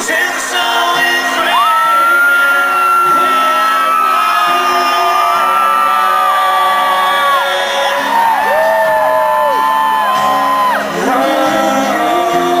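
Live unplugged performance: strummed acoustic guitar under long, wordless held high vocal notes that slide up into pitch and bend down at their ends, with whoops from the crowd.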